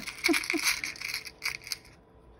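Small metal charms clinking and rattling against each other and the plastic as fingers sift through a compartment box, a quick run of light clicks that stops near the end.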